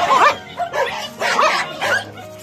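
Several dogs in a crowded pack barking and yipping excitedly at feeding time, in two bursts: one at the start and one through the second half.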